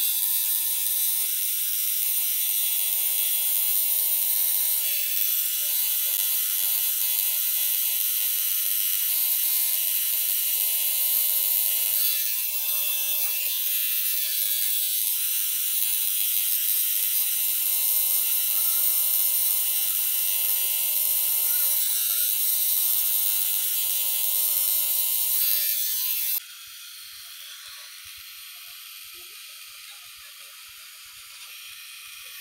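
Cartridge tattoo machine running steadily as the needle lines an outline on skin: a continuous high buzz with a steady hum beneath it. About 26 seconds in, the sound suddenly drops to a much quieter steady buzz.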